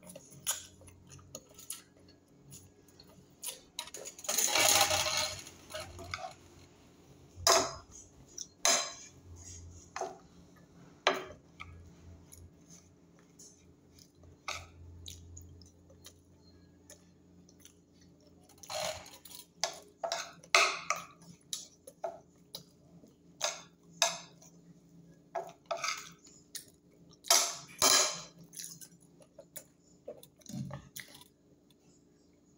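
Metal fork clinking and scraping against a glass bowl during a meal, in sharp, scattered clicks, with one longer, louder burst about four seconds in.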